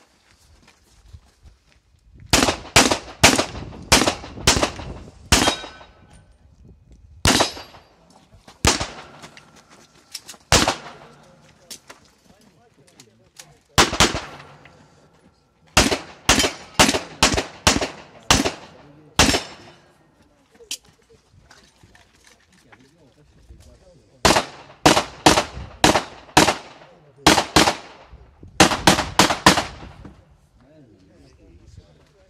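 Pistol fired in quick strings of several shots, each string separated by a pause of a few seconds, with a few single and paired shots in between.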